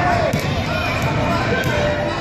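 A basketball bouncing on a hardwood gym floor as a young child dribbles, over the chatter of voices in the hall.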